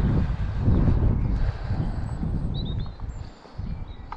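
Wind buffeting the microphone in irregular gusts, a loud low rumble that eases off near the end.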